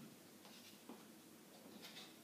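Near silence, with a few faint light taps and a scrape as a chess piece is slid into place on a wall-mounted demonstration chessboard.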